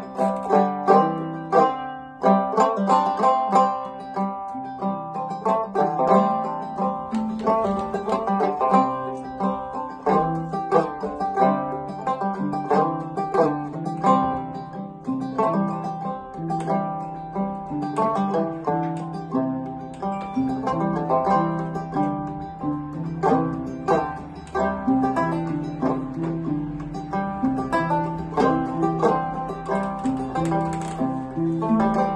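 Banjo picked in a steady, lively tune, with lower plucked notes sounding beneath it.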